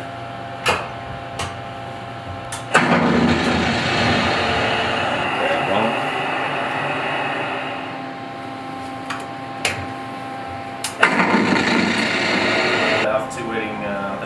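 Sharp clicks from a control panel's switches, then a loud rushing noise from the panel's machinery that starts abruptly and fades over about five seconds. A second burst of the same noise runs for about two seconds near the end and stops suddenly.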